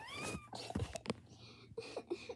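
A girl's voice fake-crying in a high, rising wail, followed by brief whimpers and a few soft knocks as toys are handled.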